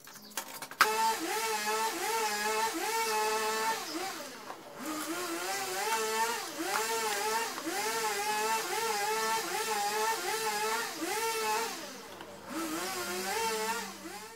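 A small electric motor whining at a high pitch, its speed wavering about twice a second. It winds down about four seconds in, spins back up, dips again near the end, and cuts off.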